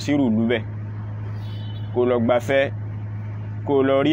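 A man's voice speaking in short phrases with pauses between, over a steady low hum.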